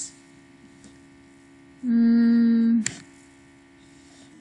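A woman's single closed-mouth 'hmm', held at a steady pitch for about a second near the middle, ending with a short click, over a faint steady electrical hum.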